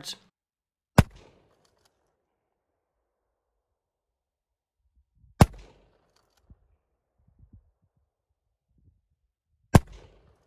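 Three shots from a Remington 870 Tac-14 pistol-grip 12-gauge pump shotgun firing rifled slugs, about four and a half seconds apart, each a single sharp report with a short ringing tail, heard from about 35 yards away.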